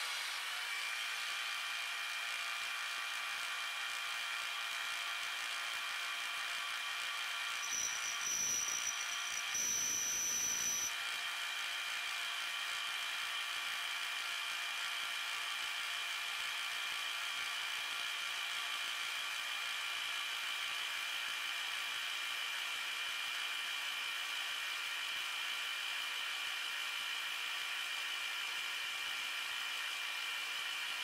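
Milling machine spindle running a 3/8 inch four-flute carbide end mill through a brass cannon barrel, a steady whine with a few even tones. About eight and ten seconds in come two brief louder spells with a high squeal.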